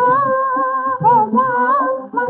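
A woman's voice singing a long, wordless held note with a slow waver in pitch, breaking briefly about halfway, over low instrumental accompaniment. The recording is an old 1950s Hindi film song with a narrow, muffled top end.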